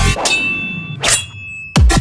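A short break in a riddim dubstep track: the bass and beat drop out and two metallic clanging hits with a ringing tail sound about a second apart. The heavy bass and beat come back in just before the end.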